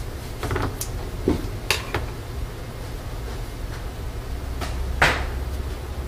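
Handling noise from tools at a workbench: a few light clicks and taps in the first two seconds, then a louder scraping rustle about five seconds in, over a low steady hum.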